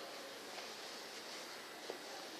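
Faint, steady hiss of background noise with no distinct source, and a small click just before the end.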